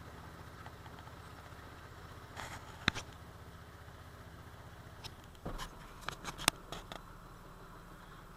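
Low, steady hum of an idling vehicle engine, with a few sharp clicks; the hum changes to a deeper drone about five and a half seconds in.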